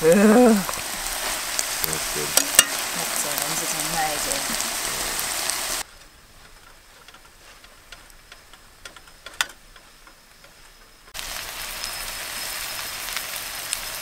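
Kimchi fried rice frying in a stainless steel pan on a camping stove: a steady sizzle with clicks and scrapes from a spatula stirring in the rice. About six seconds in the sizzle drops to a much fainter sound with a few clicks, and it comes back at full level about five seconds later.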